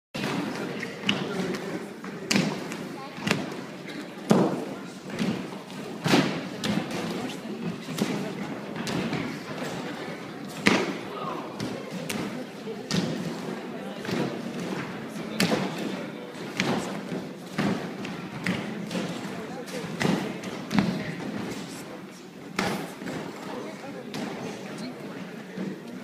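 Repeated thuds, about one a second, of boys vaulting a gymnastics horse: feet striking the take-off trampette and bodies landing on crash mats. A steady murmur of onlooking voices runs underneath.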